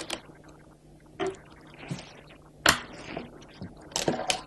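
A few sharp clicks of Go stones being placed on an analysis board, the loudest a little past halfway through.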